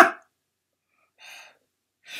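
A woman's loud, high-pitched exclamation, "Ah!", cut short in the first moment, then near silence with one faint, short hiss about a second in.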